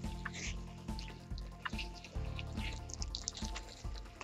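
Background music with a steady beat, under faint wet squelching from a gloved hand working the crystallised gel of a cut-open reusable hand warmer.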